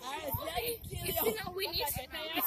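Speech only: voices talking and calling out, with no other sound standing out.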